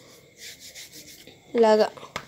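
Stick of chalk scraping on a chalkboard as digits are written: an irregular, dry scratching for about a second.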